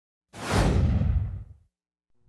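Whoosh sound effect for an animated logo reveal: a single rush of noise over a deep rumble that swells in about a third of a second in and dies away by about a second and a half.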